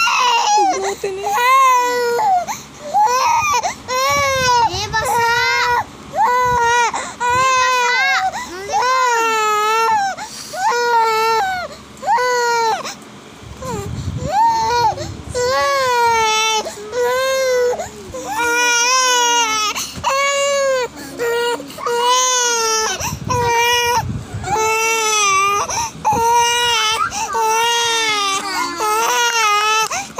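A three-month-old baby crying in short repeated wails about a second apart, each rising and falling in pitch, with a brief pause a little before halfway. It is a hunger cry: the baby is sucking on its fist and is given a milk bottle.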